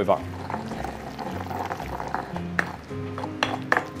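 Stone pestle knocking against a granite mortar while pounding a wet pepper paste, with a run of sharp knocks in the second half, over steady background music.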